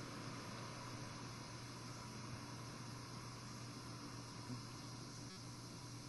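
Steady hiss with a low hum from an old video recording, and no other clear sound; the buggy's engine is not running.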